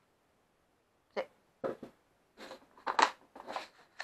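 Tabletop handling noises: a few short clicks and rustles, the sharpest about three seconds in, as craft materials are moved about, including a plastic organiser box of brads being cleared away and a spool of thread set down.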